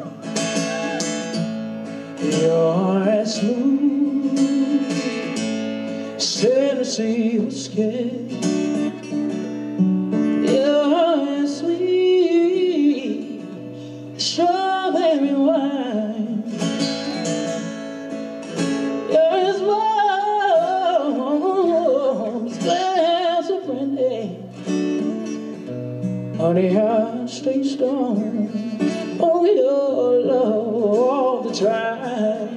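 A man singing live into a microphone while strumming an acoustic guitar.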